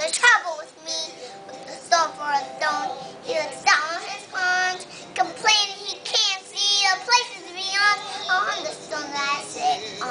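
A five-year-old girl singing a show tune solo, with several held notes.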